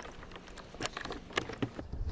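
A rope and a bungee cord being handled on a plastic kayak deck: a few light clicks and taps as the coiled line is tucked under the bungee.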